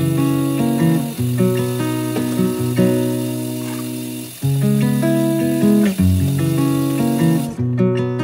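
Background music: acoustic guitar playing sustained chords at an easy pace. A faint steady hiss underneath stops near the end.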